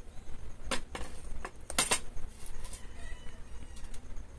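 A hand squeezing crushed green leaves in water in a glass bowl to wring out homemade leaf fertilizer. There are a few short, separate sounds, among them clinks against the glass, and the loudest comes a little under two seconds in.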